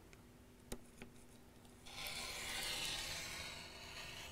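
Rotary cutter blade rolling through fabric on a cutting mat along an acrylic ruler: one rasping cut stroke of about a second and a half, starting about two seconds in. A light tap comes a little before it.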